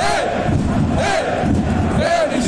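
Football supporters chanting together in the stadium stands: a loud, rhythmic sung chant from many voices.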